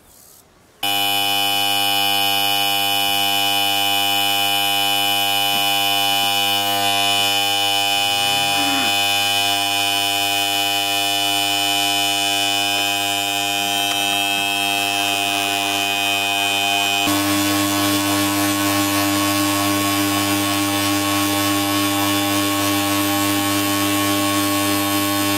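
A loud, steady electronic buzzing drone of many held tones. It starts suddenly about a second in and shifts to a lower, different mix of tones about 17 seconds in.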